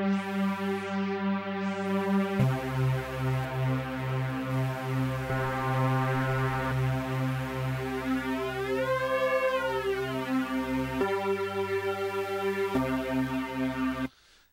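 A Reason synth trance lead, a stack of detuned sawtooth layers from Thor and Malström in a Combinator, holding long buzzy notes that change pitch a few times. Partway through, the tone sweeps up and back down as a Combinator knob is turned.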